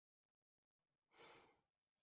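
A faint sigh about a second in, a single soft breath lasting about half a second, over near silence.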